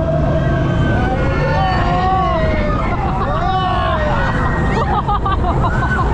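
Many overlapping voices of riders shouting and calling out on a fast-moving fairground thrill ride, over a loud, steady rumble of the ride and the rush of air past the microphone.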